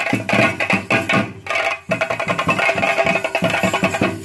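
Theyyam drumming: chenda drums beaten in a fast, even rhythm of about four strokes a second, with a steady metallic ringing above. The playing drops away briefly about a second and a half in, then comes back at full strength.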